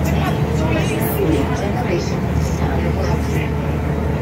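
Tour boat's engine running with a steady low drone, heard inside the passenger cabin, with passengers' chatter over it.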